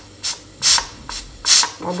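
Steam hissing out of a pressure cooker's valve in short puffs, about three, as the valve weight is pressed by hand: the pressure is being let out gradually after cooking.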